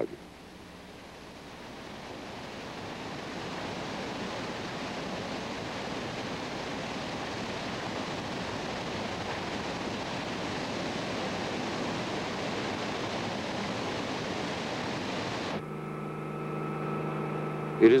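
Muddy floodwater rushing down the eroding spillway channel of the breaching earthen cofferdam: a steady, noisy rush that swells over the first few seconds and then holds. Near the end it cuts suddenly to a steady droning hum with fixed tones, heard from aboard a helicopter.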